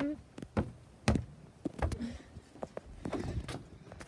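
Several irregular knocks and thuds of footsteps on wooden deck boards, with a door being handled as the walker goes into the house.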